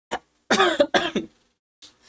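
A man clearing his throat with two short coughs about half a second apart.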